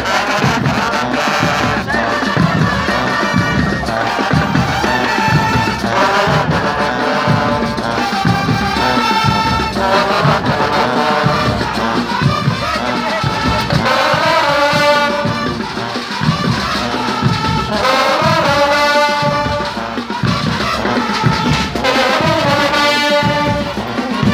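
Marching band of trumpets, trombones and sousaphones playing over a steady drumbeat.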